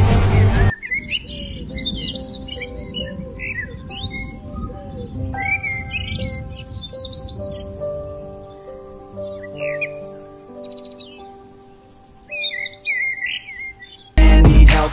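Loud music cuts off about a second in, leaving small birds chirping and twittering over soft, long-held music notes. The chirping grows louder again near the end.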